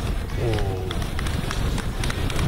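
Steady low rumble of wind and moving-vehicle noise on the outdoor race camera's microphone, with a few faint ticks, under a commentator's voice.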